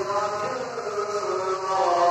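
Voices chanting, a sustained melodic line held on long notes that shift slowly in pitch.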